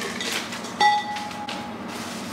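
Glass vases clinking together as they are handled: one sharp clink just under a second in that rings on with a clear, bell-like tone for about a second.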